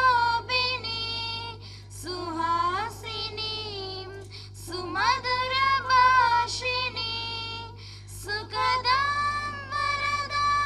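A high solo voice singing a slow melody in long held notes that glide between pitches, in phrases of two to three seconds with short breaks between them, over a steady low hum.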